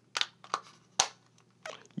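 Plastic back cover of a Honeywell 5800PIR-RES wireless motion sensor being pressed back onto its housing: a few light clicks and rubs of plastic in the hands, with one sharper snap about halfway through.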